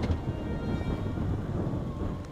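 Sport-touring motorcycle riding slowly, a steady low engine rumble mixed with wind buffeting on the microphone, with a short click at the very start.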